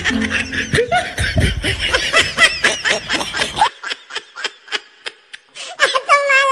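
Laughter in a quick run of short high-pitched bursts, thinning out to scattered short bursts a little past halfway through.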